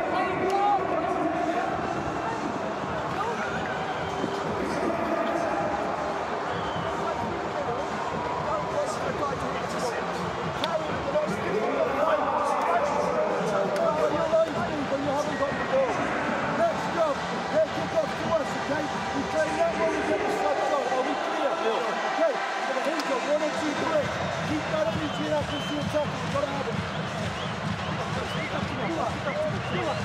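Men's voices talking over the steady noise of a stadium crowd. From about halfway in, a man speaks in short, punchy bursts, as to a team huddle.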